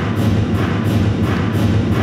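Synthesizer soundtrack playing back: a steady low synth drone under rhythmic pulses of pink noise shaped by an envelope and run through Valhalla reverb.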